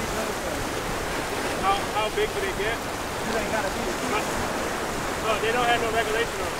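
Ocean surf washing over shoreline rocks, a steady rush of water, with short bits of indistinct voices about two seconds in and again near the end.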